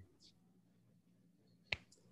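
Near silence with room tone, broken near the end by a single short, sharp click.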